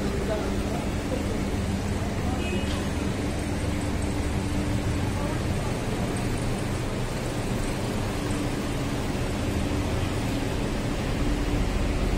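Street traffic noise: a steady low hum of vehicle engines running nearby, with an even wash of road noise.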